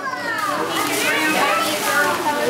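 Children's excited voices, several overlapping and rising and falling in pitch, with tissue paper rustling as a gift bag is unwrapped.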